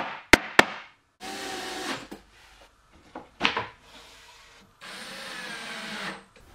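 A wooden mallet knocks a plywood cabinet panel three times in quick succession. Then a cordless drill drives screws into the plywood in a few short runs, the last and longest near the end.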